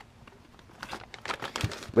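Clear plastic bag crinkling as it is handled. After a quiet moment there is a run of quick, irregular crackles from about a third of the way in.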